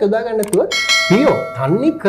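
Subscribe-animation sound effect: a quick click about half a second in, then a bright bell chime that rings for about a second, laid over talking.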